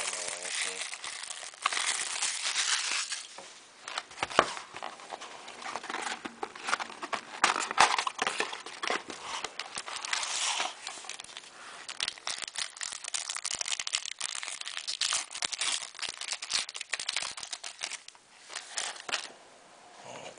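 Clear plastic shrink wrap crinkling and tearing as it is stripped off a trading-card box, followed by the cardboard box and a card pack being opened: irregular crackling and rustling that comes and goes in louder spells.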